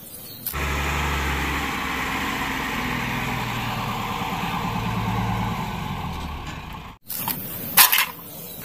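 Heavy diesel engine running steadily at a low, even pitch, cut off abruptly a second before the end. A brief clatter follows near the end.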